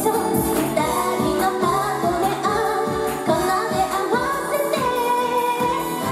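Fast pop music with a steady beat and a woman singing live into a microphone.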